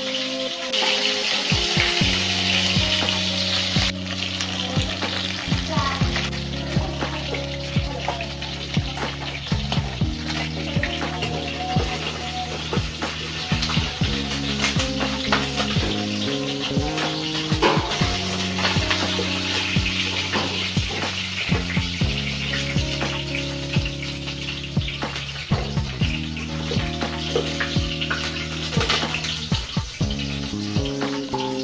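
Food frying in hot oil in a wok, a steady sizzle throughout with frequent small clicks and scrapes of a metal slotted spoon. Background music with slow, sustained low chords runs underneath.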